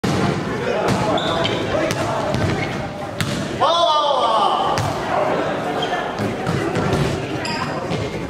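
Light volleyball rally in an echoing sports hall: the soft plastic ball is struck sharply a few times while players call out, with one loud shout a little before halfway.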